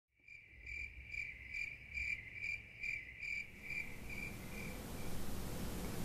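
Cricket-like chirping: about ten short, high chirps a little over two a second, growing fainter and dying away after about four and a half seconds, leaving faint room hiss.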